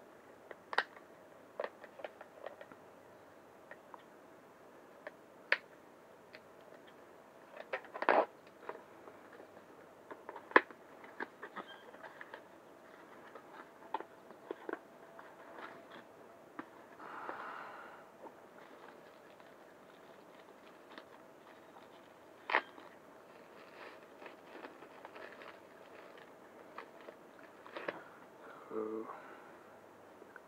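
Cardboard and paper packaging handled by hand: scattered clicks, taps and rustles of box flaps, inserts and wrapping, with a few sharper knocks, the loudest about eight seconds in, and a short rustle around seventeen seconds in.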